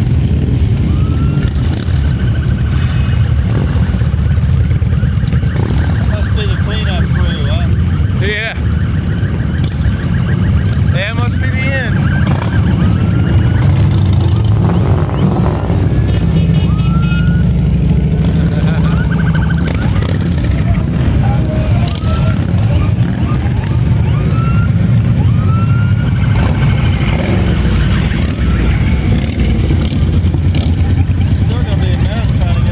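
A steady procession of cruiser and touring motorcycles passes at low speed, their engines making a continuous deep rumble. Short high sliding, siren-like tones sound over the engines every couple of seconds, with a longer rising, wavering one about a third of the way in.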